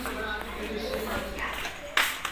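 Quiet, indistinct voices with a few light knocks and handling noise.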